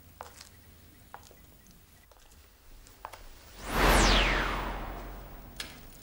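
A loud dramatic sound effect about midway through: a whoosh that sweeps down in pitch with a low rumble under it and dies away over about two seconds. Before it come a few faint taps.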